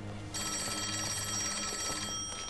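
Antique-style desk telephone ringing: a fast, trilling ring that starts about a third of a second in.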